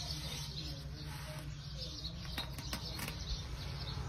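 Birds chirping in the background over a steady low hum, with a few short soft taps as hands press and smooth an adhesive stencil transfer onto a metal milk can, about two and a half to three seconds in.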